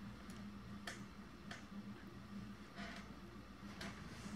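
Quiet room: a low steady hum with about five faint clicks at uneven intervals.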